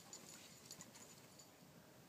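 Near silence: faint outdoor background with a few soft ticks in the first second.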